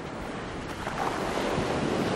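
Surf washing up the sand, with wind rumbling on the microphone; the wash grows louder as a wave runs in around the feet.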